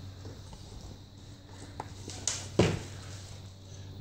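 Rustling of a nylon scabbard strap and clothing as the strap is pulled off over the head and handled, with two short louder brushes a little past halfway, over a steady low hum.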